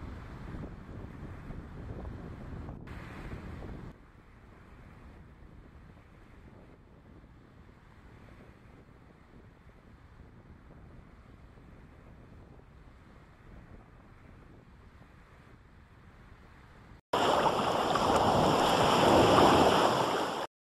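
Wind and water noise, with wind buffeting the microphone, from fast boats and sailboards on choppy water. It drops to a quieter level about four seconds in. Near the end a sudden, much louder rushing noise starts and runs for about three seconds.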